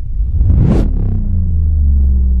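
Cinematic logo-sting sound effect: a whoosh swelling to a peak just under a second in, then a deep booming rumble that rings on as a low sustained tone.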